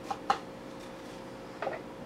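A few short, sharp clicks and taps from strawberries being cut with a knife and handled over a cutting board and bowls: two close together near the start, one more near the end, over a faint steady hum.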